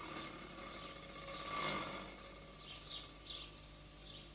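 Faint outdoor background with a few short bird chirps in the second half.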